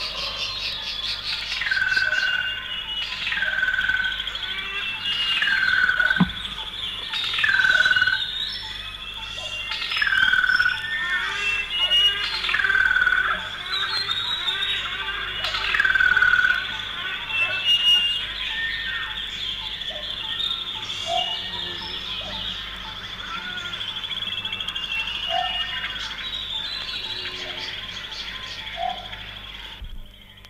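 Forest ambience: a bird gives a call about every two seconds for roughly the first half, each falling sharply in pitch onto a short held note. Scattered fainter chirps follow, over a steady high insect-like drone throughout.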